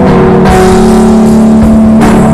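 Loud, distorted electric guitar holding long sustained notes over drums and cymbals in heavy stoner/drone rock, played live. A new held note comes in about half a second in.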